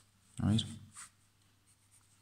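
Graphite pencil on drawing paper: a few short scratching strokes.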